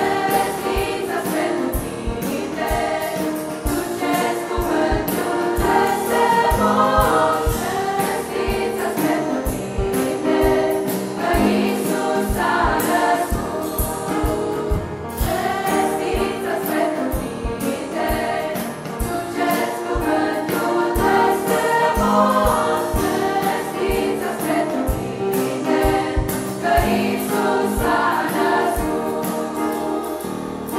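Choir singing a Romanian Christian Christmas carol (colindă).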